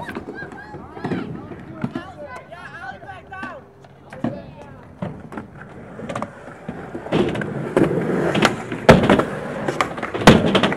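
Skateboard wheels rolling on concrete, with sharp clacks of the board hitting the ground, the loudest about nine seconds in. Distant voices of people talking and calling out in the first few seconds.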